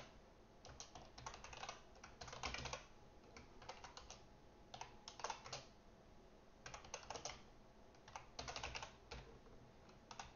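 Computer keyboard typing, faint, in about six short bursts of keystrokes with pauses between them.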